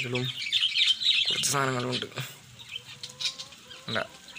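Birds chirping and chattering at a bird farm, with a brief spoken voice about a second and a half in.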